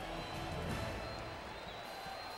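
Arena crowd cheering, a steady din of many voices, heard through the television broadcast sound.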